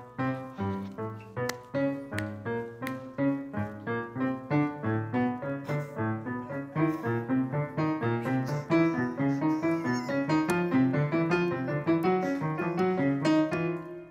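Grand piano played live: a continuous run of chords and single notes, several strokes a second, each ringing and dying away under the next.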